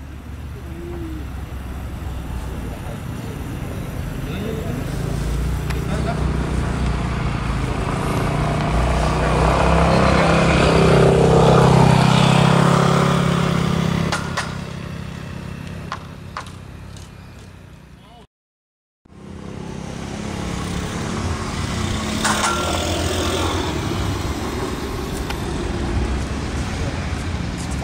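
A motor vehicle's engine over outdoor background noise, growing louder to a peak about twelve seconds in and then fading. The sound cuts out for under a second about eighteen seconds in, and steady outdoor noise then resumes.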